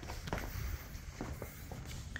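A few soft footsteps on a concrete patio, with a low rumble on the microphone from the handheld phone moving.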